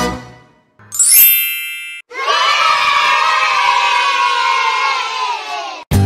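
A bright chime sound effect with a rising sparkle about a second in, then a crowd of children cheering for about four seconds. The cheer cuts off just before guitar music starts.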